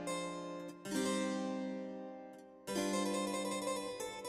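Baroque-style background music played on harpsichord. New chords are struck about a second in and again near three seconds, and each rings and fades.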